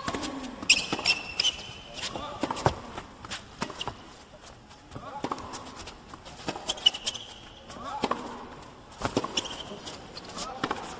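Tennis ball bounced on an indoor hard court in a series of sharp taps as a player gets ready to serve, with scattered voices calling out from the arena crowd.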